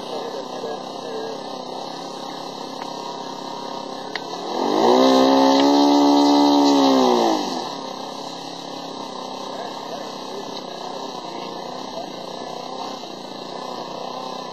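Radio-controlled model biplane's engine idling, then opened up about four and a half seconds in to a loud, higher-pitched run for some three seconds and throttled back to idle: a ground run-up while the aircraft is held.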